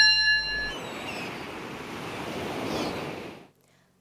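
A short ringing chime that dies away under a second in, followed by a steady rushing noise that fades out shortly before the end.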